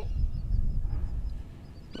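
Wind buffeting the microphone, heard as a low, uneven rumble.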